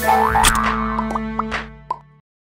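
Short cartoonish outro jingle: music with a rising swoop about half a second in, then a few short struck notes, fading away near the end.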